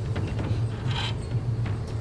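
Indoor hall ambience: a steady low hum with faint scattered clicks, and a brief hiss about a second in.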